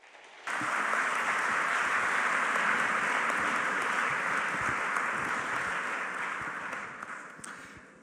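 Audience applause that starts about half a second in, holds steady, then fades out over the last couple of seconds.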